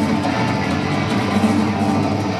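Live rock band playing loudly: bass guitar and drum kit with electric guitar.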